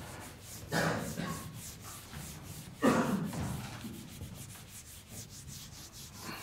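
Whiteboard eraser rubbing across the board in repeated back-and-forth strokes, with two louder scrubs about a second in and near the three-second mark.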